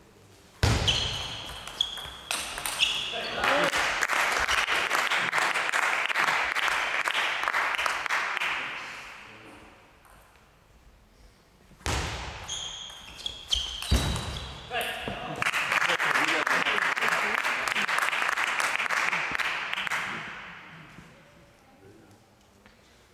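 Table tennis rallies, with ping-pong ball hits, each ending in a sudden loud shout, then a few seconds of spectators applauding that fades out. This happens twice, the second time about halfway through.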